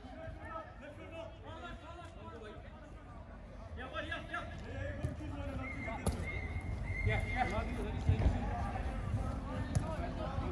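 A five-a-side football game in play: faint shouts and calls from the players, and a few sharp thuds of the ball being kicked, one about six seconds in and another near the end, over a steady low rumble.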